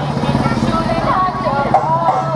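Several voices with a melodic line that slides in pitch, over a steady low hum.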